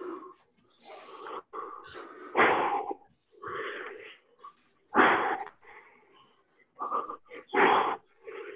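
A man breathing hard in time with longsword cuts: a sharp, loud exhale with each blow, about every two and a half seconds, and quieter inhales between them during the recoveries.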